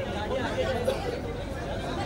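Overlapping chatter of several voices, none standing out clearly.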